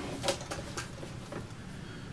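A run of faint clicks and light taps as the suitcase turntable's metal latch is undone and its lid lifted open.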